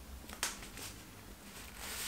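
Quiet handling of a vinyl record's cardboard sleeve: one light tap about half a second in, then a papery rustle that grows near the end as the printed insert is slid out.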